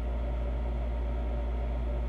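A steady low hum with a faint hiss over it, unchanging throughout, with no other sound.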